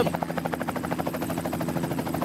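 Helicopter rotor with a steady, rapid, even chop.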